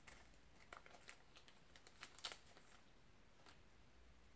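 Faint crinkling of a thin plastic wrapper being handled and opened to take out a trading card: a few soft, short crackles, the clearest about two seconds in, over near silence.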